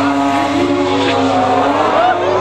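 Mazda RX-7's 13B two-rotor rotary engine held at high revs during a burnout, a steady high-pitched note that wavers slightly and dips a little near the end, over the hiss of spinning, smoking tyres.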